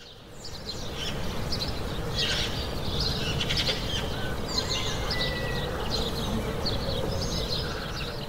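Birds chirping and calling over a steady outdoor background, many short chirps in quick succession; a recorded nature-sound intro to a song, easing off near the end.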